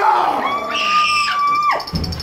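A person screaming: one long high-pitched scream that rises at the start, holds its pitch for about a second, then breaks off.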